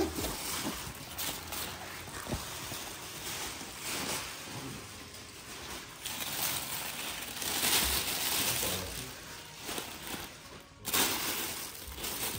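Plastic wrapping and tissue paper rustling and crinkling as they are handled, loudest in the middle of the stretch.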